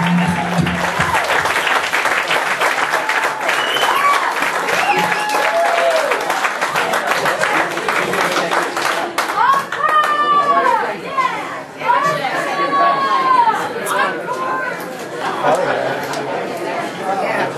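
Club audience clapping and cheering with shouts at the end of a live set; the clapping thins out about halfway through, leaving loud crowd chatter and calls.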